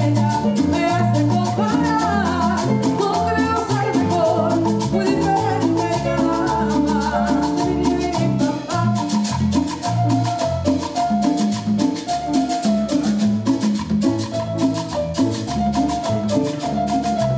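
Latin band playing live, an instrumental passage: congas, timbales and a scraped metal güira keep a dense, fast rhythm under electric bass, while a bright mallet-like lead melody runs over the top.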